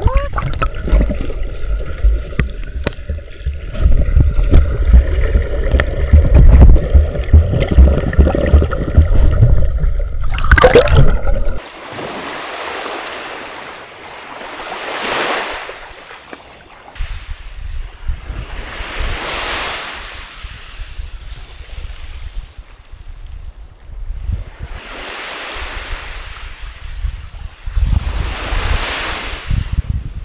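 Sea water sloshing and splashing around a camera held at the water's surface, heard as a loud, choppy rumble. After a sudden cut about eleven seconds in, small waves wash onto a sandy beach, swelling and fading about every four seconds.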